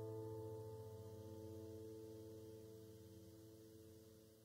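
Final chord of an acoustic guitar left to ring out, its strings sustaining and slowly fading away with no new strum.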